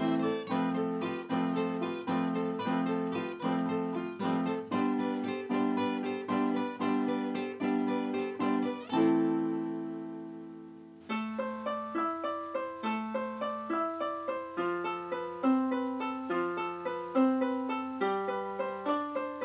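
Acoustic guitar fingerpicked in a quick, repeating pattern, ending on a chord that rings and fades away over about two seconds. A piano keyboard then takes over with a slow line of single notes.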